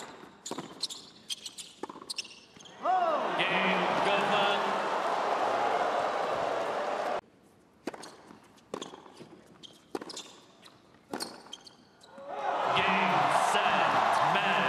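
Tennis ball bouncing and being struck by rackets on a hard court, sharp knocks over a quiet arena, each rally ending in a crowd bursting into cheers and applause: once about three seconds in, cut off a little after seven seconds, and again about twelve seconds in.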